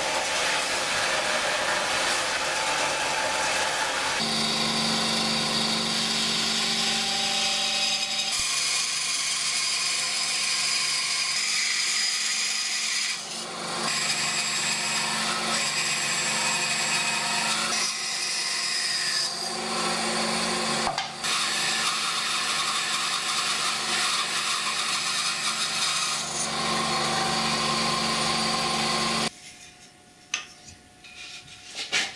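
Woodworking power tools running: a bench belt sander flattening wood for a guitar neck, and a bandsaw cutting a wooden strip, with abrupt changes in the sound between cuts. The noise stops suddenly near the end.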